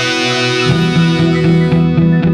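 Live rock band playing an instrumental passage led by guitars. A held, ringing chord dies away, and under a second in a low repeated note line and evenly picked guitar notes take over.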